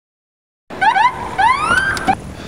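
Police car siren giving two quick rising yelps and then a longer rising whoop, starting a little way in after silence: the short chirp a patrol car gives to pull a driver over.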